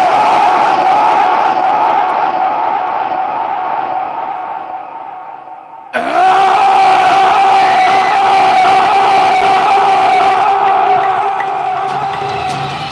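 Long held vocal cries from stage actors through a loud PA, two of them: the first wavering and fading away, the second starting suddenly about halfway in and held steady on one pitch.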